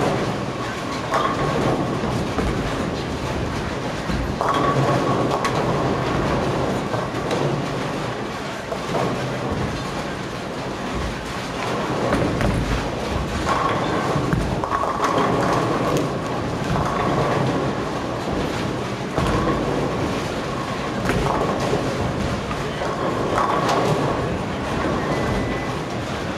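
Bowling alley ambience: a continuous rumble of bowling balls rolling down the lanes. Louder surges and pin crashes come and go every few seconds across the many lanes.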